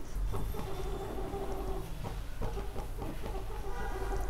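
A chicken clucking in the background, a few short held calls, over a steady low hum.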